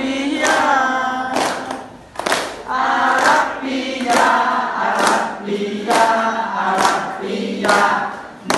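A group of voices singing a Khmer children's song together, with a sharp beat about once a second.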